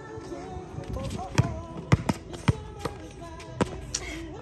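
Basketball dribbled on a hard court: five sharp bounces, starting about a second and a half in, roughly half a second apart.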